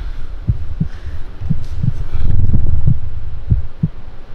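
Heartbeat sound effect: low paired thumps, lub-dub, about once a second, over a low hum that grows louder in the middle.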